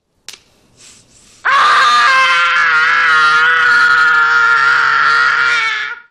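A boy screaming: one long, high scream that starts about a second and a half in and is held for about four and a half seconds before cutting off.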